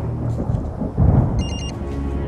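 A handheld PDA gives a short trill of high electronic beeps, its alert going off about halfway through, just after a deep low rumble about a second in.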